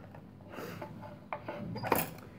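Clear plastic chuck guard on a drill press being swung down by hand: light rubbing and handling noise, with a sharp click just before the end.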